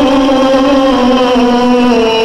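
Male voice reciting the Quran in melodic tajweed style, drawing out one long held vowel (a madd). The note drops slightly in pitch about halfway through.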